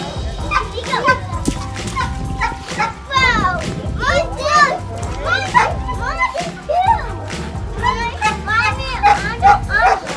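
Young children squealing and shouting at play, with high, swooping cries throughout, over background music.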